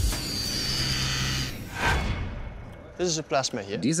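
Electric-sounding sound effect under a plasma animation: a sudden start into a steady low hum with hiss and a faint falling whistle, then a whoosh about two seconds in that fades out.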